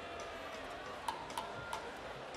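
Quiet stage background with two sharp, short clicks about a second in, each with a brief ring.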